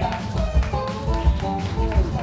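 Live band playing an instrumental passage with no singing: lap steel guitar notes over strummed acoustic guitar and a steady drum beat, about three beats every two seconds.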